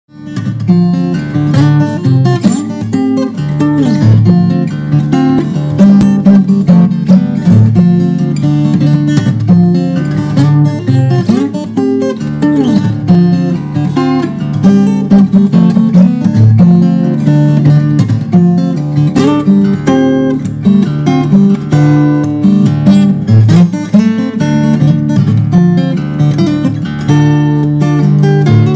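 Acoustic guitar playing an instrumental piece: quick picked notes over sustained bass notes.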